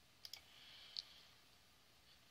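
Computer mouse clicks: a quick double click, then a single click about a second later.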